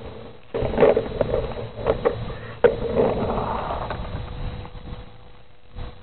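Skateboard wheels rolling over an asphalt driveway, with a few sharp clacks, the noise fading away after about four seconds.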